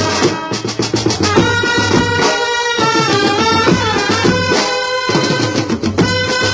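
Indian brass band playing live: hand drums, drum kit and bass drum keep a busy beat under a held, stepping melody line. A burst of rapid drum strokes comes about half a second in.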